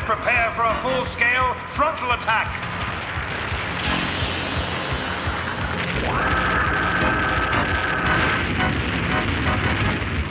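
A cartoon rumbling sound effect of a giant drill-shaped bomb boring up through the ground, under the dramatic background score. Wavering, swooping tones fill the first couple of seconds. A steady high note slides in about six seconds in and holds for a couple of seconds.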